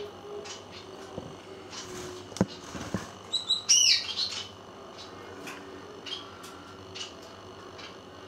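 A bird chirping: a short run of high, quickly bending chirps about three and a half seconds in, over a low steady background with a few soft clicks and one sharper click just before.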